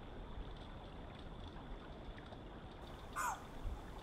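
Faint outdoor background hiss, with one short animal call falling in pitch about three seconds in.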